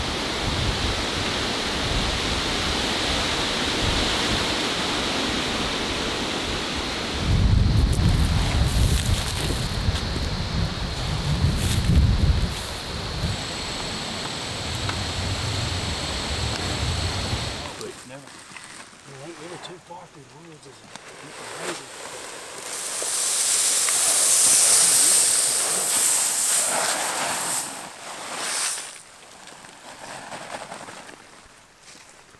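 Wind buffeting the microphone outdoors, strongest in heavy low gusts through the middle, over a faint steady high whine. Near the end there is a quieter stretch broken by a broad rustling hiss.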